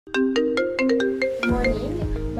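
Phone ringtone: a quick melody of short pitched notes, about five a second. About one and a half seconds in, background music with a deep beat comes in under it.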